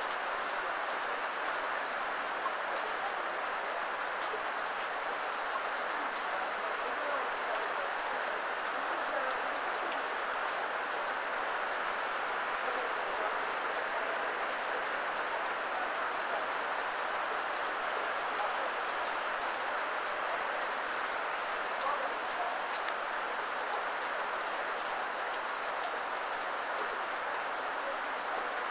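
Heavy rain falling steadily on pavement and foliage, a constant even hiss with scattered drip ticks.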